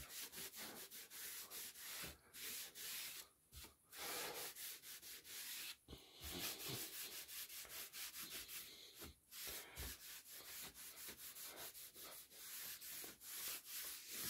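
Cloth rag rubbing an amber liquid finish into thin wooden panels: quick back-and-forth wiping strokes, a faint rough swishing with a few brief pauses.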